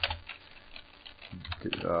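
Typing on a computer keyboard: a short run of keystrokes at the start and another a bit past halfway, ending as a command is entered.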